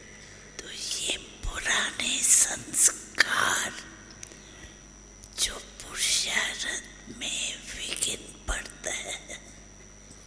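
A woman speaking slowly in a soft, breathy, near-whispered voice, in two phrases with a short pause midway.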